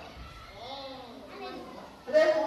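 Faint background chatter of children's voices.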